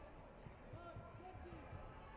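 Faint, dull thuds of taekwondo fighters' kicks and footwork on the foam mat and padded body protectors, several in quick succession, under distant voices.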